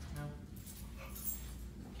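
A six-month-old mixed-breed puppy whimpering briefly.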